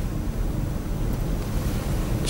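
Steady low rumble with a faint hiss over it, the background noise of the broadcast audio line in a pause between speakers.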